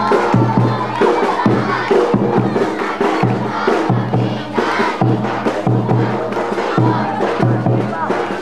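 Sinulog street-dance drumming, a steady rhythm of low drum strikes, with a crowd of young dancers shouting and chanting over it.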